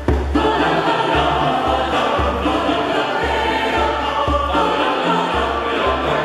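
Mixed choir singing with instrumental accompaniment, a low bass note pulsing on and off underneath.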